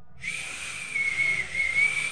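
Small red plastic guitar-shaped toy whistle blown in one long, airy blast of about two seconds: a steady high note with a slight waver.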